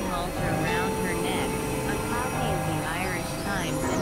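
Experimental synthesizer drone music: steady held tones layered under warbling, wavering pitch sweeps, over a dense, noisy low rumble.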